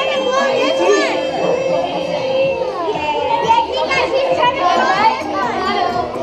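A room full of children's voices chattering and calling out over each other, with a voice or two drawn out for a second or more.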